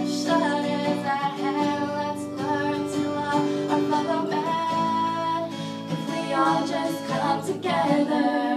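Acoustic guitar strummed as song accompaniment, played live.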